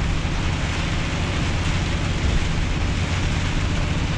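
Steady noise inside a truck cab at motorway speed in heavy rain: the truck's engine drone under the hiss of tyres on the wet road and rain on the windscreen.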